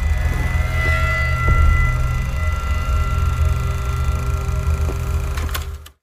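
A glitch-style transition sound effect: a steady low rumbling drone with a few faint held tones above it, cutting off suddenly near the end.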